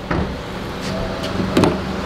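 A car door handle clicks and the door unlatches, the loudest sharp click coming about one and a half seconds in. Under it runs the steady low hum of the car's engine idling.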